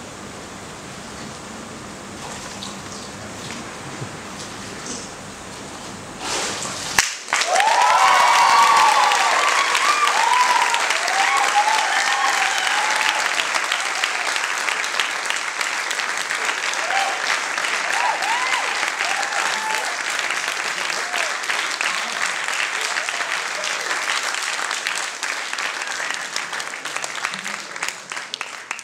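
After about six quiet seconds and a short sharp noise, a church congregation breaks into applause with cheering whoops, which keeps on steadily.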